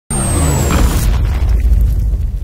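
Logo-intro sound effect: a loud, deep cinematic boom that hits at once. A bright hiss and a faint falling whistle fade out after about a second, while the heavy low rumble carries on.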